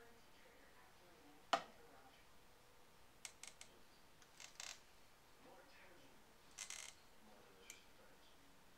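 Near silence broken by a single sharp tap about one and a half seconds in, then a few brief scratchy rustles: a fine paintbrush and hand working over silk stretched on a frame.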